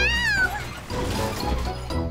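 A short, high, meow-like cartoon cry in the first half-second, rising then falling in pitch, over background music.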